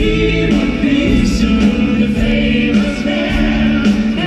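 Live pop band playing: several voices singing together over drums and keyboards.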